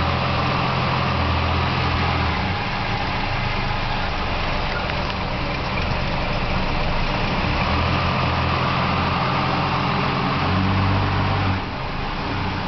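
Dodge Dart's 225 Slant Six inline-six engine idling steadily and smoothly under the open hood.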